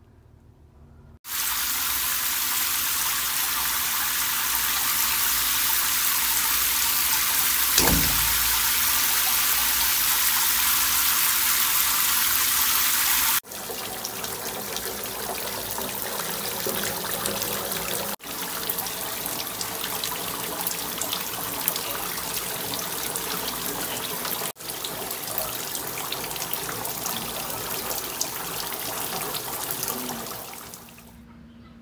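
Water rushing into a bathtub where a bath bomb is dissolving: a loud, steady hiss that breaks off abruptly three times and starts again. There is a single low thump about eight seconds in.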